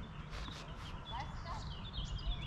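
Outdoor ambience at a tennis court: birds chirping, faint distant voices and a few soft taps, over a low steady rumble.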